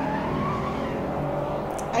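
A car driving by on a city street, its engine a steady drone.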